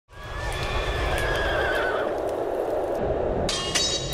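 A horse whinnying over a low rumble. About three and a half seconds in comes a sharp, ringing hit.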